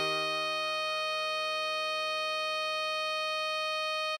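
Computer-rendered alto saxophone holding one long steady note, written C6 (sounding concert E-flat), over a sustained E-flat major chord accompaniment.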